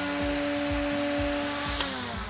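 Battery-powered string trimmer (whipper snipper) motor running at a steady pitch, then starting to spin down near the end.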